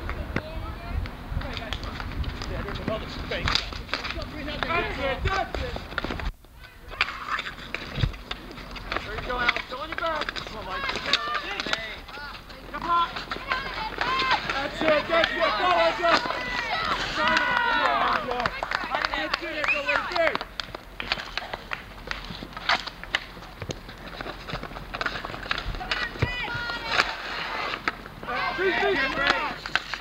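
Voices of street hockey players and onlookers calling and shouting across the rink, the shouting busiest in the middle stretch and again near the end, over scattered knocks of sticks and ball on the pavement. The sound cuts out briefly about six seconds in.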